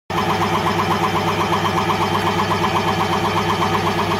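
Electric piston air compressor running steadily, its pump pulsing fast and evenly over a constant low hum.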